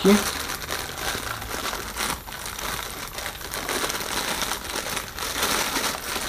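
Thin plastic bag crinkling and rustling as hands handle and unwrap it; the crackling goes on unevenly throughout.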